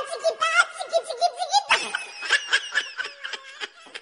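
A person laughing hard in rapid, high-pitched bursts, trailing off near the end.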